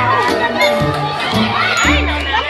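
A crowd, children among them, shouting and cheering over background music with a steady bass line.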